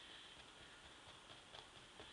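Near silence: room tone with a faint steady hiss and a few very faint ticks.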